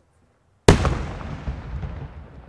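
A single loud firework bang about two-thirds of a second in, followed by a long rumbling echo that slowly dies away.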